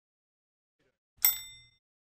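Near silence, then a single short, bright metallic ding just past a second in that rings out briefly: a glint sound effect as the silhouette raises a scalpel in the logo animation.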